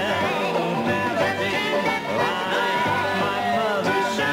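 Upbeat song played live on banjo, piano and double bass, with singing over the instruments.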